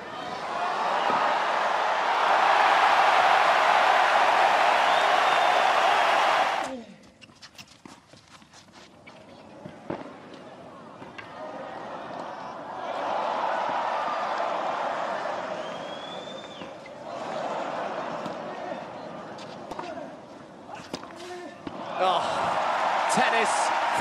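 A tennis crowd cheering and applauding loudly for the first six seconds, cut off abruptly. Then sharp ball-on-racket strikes of a clay-court rally over a hushed crowd, followed by rising swells of crowd noise and cheering with more ball strikes near the end.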